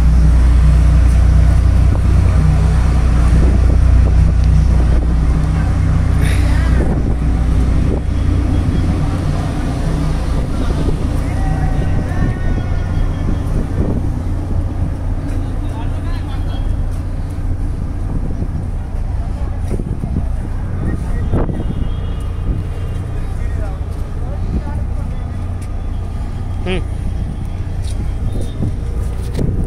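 Steady low drone of a passenger ferry's engines heard from the open deck, with wind on the microphone. The rumble is heaviest in the first few seconds.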